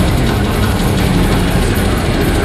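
Live speed metal band playing loud: distorted electric guitar over rapid, dense drumming.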